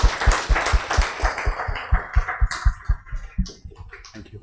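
Audience applauding; the clapping thins out and dies away near the end.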